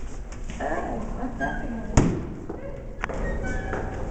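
Footsteps and handling noise of a handheld camera while walking, with indistinct voices in the background. A single sharp thump about two seconds in is the loudest sound, followed by a lighter knock a second later.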